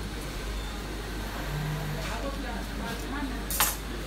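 Workshop room sound with a steady low hum and faint voices in the background, then one sharp clink near the end as a small clear container is set down on the wooden cutting table.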